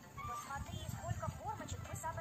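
Audio of a children's video playing from a smartphone: music with a voice gliding up and down in arching calls, over low irregular knocks.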